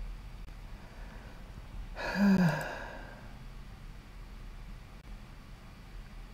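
A man's sigh about two seconds in: a short breathy exhale carrying a brief falling voiced tone, over a faint steady low hum.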